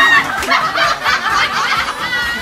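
Young women laughing and giggling, opening with a loud high squeal.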